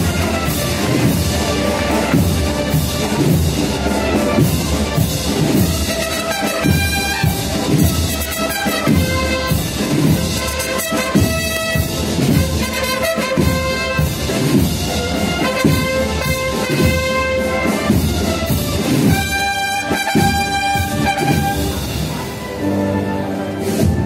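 A Spanish municipal wind band of brass and woodwinds playing a Holy Week processional march. Sustained brass melody over a steady beat throughout.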